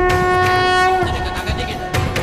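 Dramatic background score: a loud, held horn-like note that cuts off about a second in, after which the music carries on more quietly.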